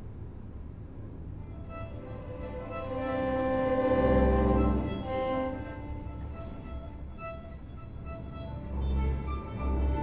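String orchestra playing a soft coda col legno tratto, the wood of the bow drawn across the strings with one single bow per note. The held chord swells twice, and some notes speak more than others because the bow wood does not always sound the string.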